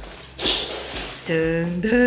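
A woman's voice laughing: a breathy burst, then a long drawn-out held note that steps up in pitch near the end.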